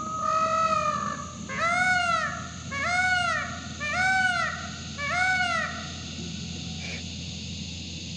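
A peacock calling loudly: one long call, then four arched, honking calls about a second apart, each rising and falling in pitch.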